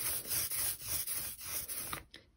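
Soft rubber brayer with a blue handle rolling back and forth through relief ink on an inking plate, a rubbing hiss that swells and fades with each stroke as the roller picks up a rainbow-roll blend.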